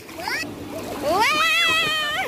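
A child's high-pitched vocal cry, a short rising call and then a long one that climbs and holds with a slight wobble, over water splashing.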